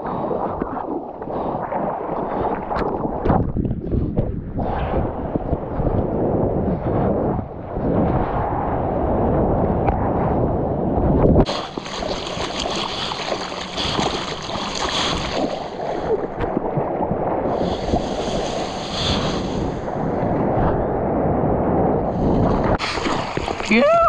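Water sloshing, gurgling and splashing against a surfboard at water level as a surfer paddles by hand. From about halfway a brighter hiss of rushing water is added, as the board moves fast with spray coming off its nose.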